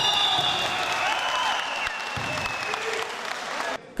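Spectators in a sports hall applauding a freestyle wrestling bout, with voices calling out over the clapping. The noise slowly eases off and cuts out sharply just before the end.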